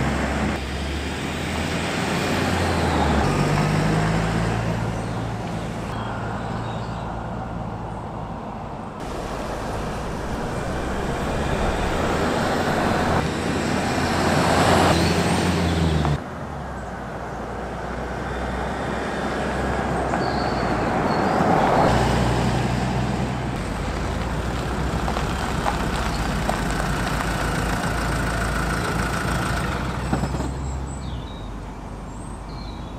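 A motor vehicle's engine running with road and traffic noise, its low hum shifting in pitch, in several clips joined with abrupt cuts.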